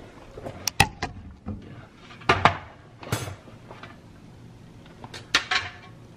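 Metal baking pan and wire cooling rack knocking and clanking against each other and a sheet pan as a pan of sticky buns is flipped out onto the rack: a few sharp clanks about a second in, a couple more around two to three seconds, and another pair near the end.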